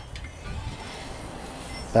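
Bacon-wrapped filet mignon sizzling on the hot grate of a charcoal kettle grill, a steady even hiss.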